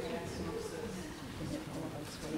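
Indistinct murmur of a congregation talking quietly among themselves, with scattered footsteps and shuffling as people move up to the front.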